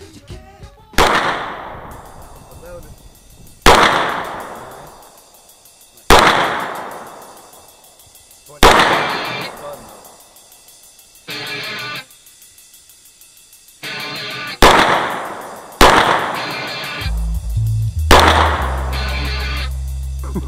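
Ruger SR22 .22 LR semi-automatic pistol fired seven times at an unhurried, uneven pace, each sharp crack trailing off in a long echo. A low steady sound comes in near the end.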